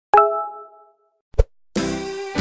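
Edited-in intro sound effects: a single bright ding that rings for about half a second, a short low pop about a second later, then music starting near the end.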